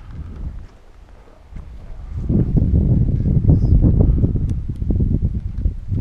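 Wind rushing and buffeting over the microphone of a camera on a flying RC slope glider, growing much louder about two seconds in as it picks up speed.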